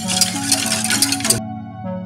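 A wire whisk stirring a milk pudding mixture in a pot, a rapid scraping and clinking against the pot that cuts off suddenly about one and a half seconds in. Background keyboard music plays throughout.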